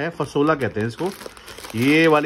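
A packet of dried beans crinkling as it is handled and turned, with talking over it.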